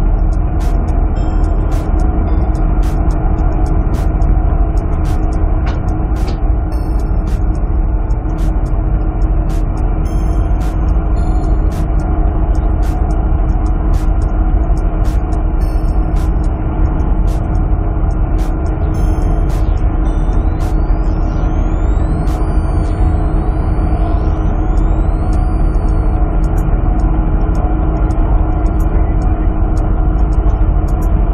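Loud, steady low drone of a fishing trawler's engine and deck machinery, with several steady hums running through it.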